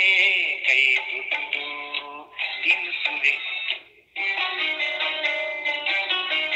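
A recorded song: a singing voice with melodic instrumental accompaniment. It breaks off briefly about four seconds in, and then the music resumes with held notes.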